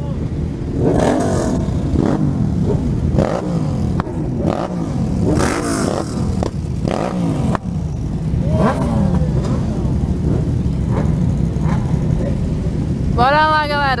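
A large group of motorcycles idling, with throttles blipped several times so engines rev up and drop back. A voice comes in near the end.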